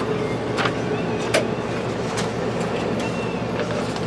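Steady mechanical hum, with a few short sharp clicks over it.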